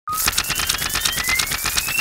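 Logo intro sound effect: a rapid, even rattle of about a dozen clicks a second, with several thin whistling tones rising slowly in pitch over it.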